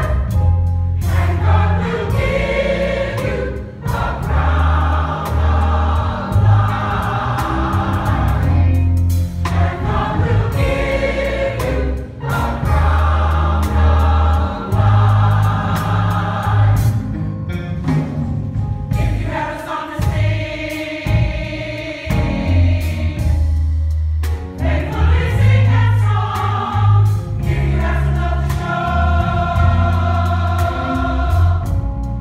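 Gospel choir singing in full harmony over instrumental accompaniment with a strong, sustained bass line.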